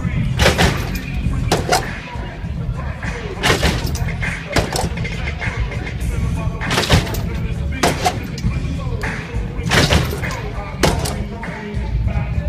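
A hydraulic lowrider being hopped, its body slamming down with sharp bangs that come in pairs about a second apart, every three seconds or so. Loud music with a heavy bass and crowd voices run underneath.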